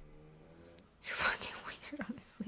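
A woman's voice, low and under her breath: a faint hum, then a breathy whisper from about a second in.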